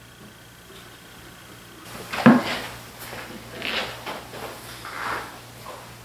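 A solid oak box lid on wooden hinge pins being worked: a sharp wooden knock about two seconds in, then softer scraping and knocking of wood on wood.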